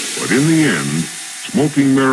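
A spoken voice sample in a minimal techno mix, heard over a steady hiss with no beat; the voice speaks in two short phrases with a pause between them.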